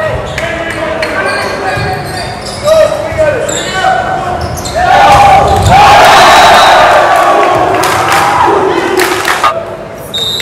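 Volleyball rally in a gymnasium with echo: sharp smacks of the ball being hit and players shouting. About five seconds in, a loud stretch of cheering and yelling follows the point and lasts a few seconds before easing off near the end.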